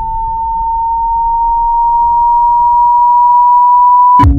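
A single electronic tone, a pure ringing sound-effect tone, slowly rising in pitch and growing steadily louder. A faint low rumble sits beneath it and fades away.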